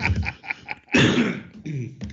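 A man coughing to clear his throat, with the loudest cough about a second in.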